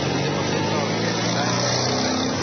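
Steady low hum of a running engine over a noisy background.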